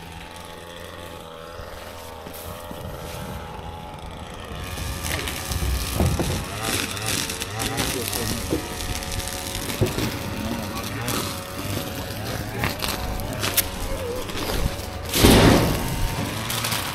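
Rustling and handling noise as brush and sticks are passed up over the side of a full dump trailer, with muffled voices, and a short loud rustling burst near the end as a piece is hauled up.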